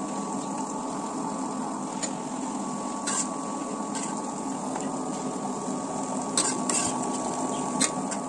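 Electric wet grinder running steadily, its rollers grinding soaked urad dal into batter: a steady hum with a faint higher whine, and a few light clicks.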